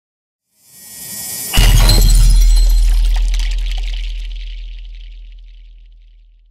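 Edited-in cinematic sound effect. A hissing riser swells up and ends about a second and a half in with a sudden heavy hit: a very deep boom with a bright crash on top. The hit then fades slowly over about four seconds.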